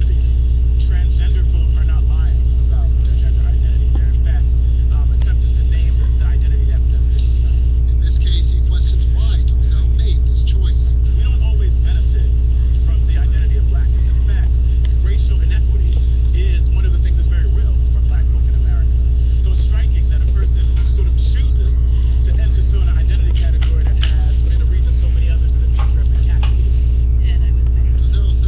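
A loud, steady low electrical hum with a stack of even overtones, over faint, muffled speech.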